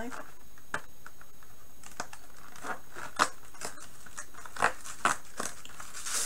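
Cardboard packaging being handled and torn open: a scatter of short crackles, taps and tearing snaps as perforated cardboard compartment doors on a toy playset are pulled open. The loudest snap comes a little past three seconds in, and two more sharp ones come close together around five seconds in.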